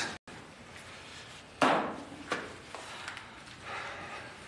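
A single loud knock, like something hitting wood, about one and a half seconds in, followed by a few lighter knocks and clicks.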